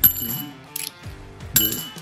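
Half-dollar coins clinking against each other as they are counted into a hand: two short metallic clinks, each with a brief high ring, about a second and a half apart.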